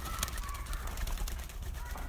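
Faint bird calls from the penned farm birds: a few short, high notes, over a low rumble with scattered light clicks.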